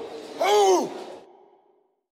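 A shouted 'ahoo'-style war cry whose pitch rises and then falls, echoing as it dies away about a second in. It is the last of three such shouts in quick succession.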